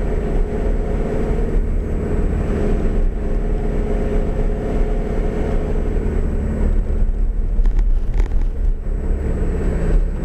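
A motor vehicle's engine running steadily while driving at a constant pace, heard from inside the cab, with low road noise under it.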